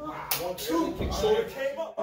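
A single sharp open-hand slap about a third of a second in, followed by voices.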